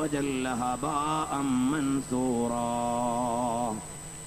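A man's voice chanting a melodic, drawn-out recitation, ending on a long held note that stops shortly before the end.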